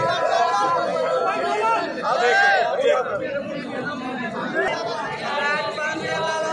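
A crowd of men talking and calling out at once, with several voices overlapping in a steady chatter.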